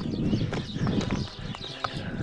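Birds startled into flight, a flurry of wingbeats, mixed with footsteps on rough stone steps.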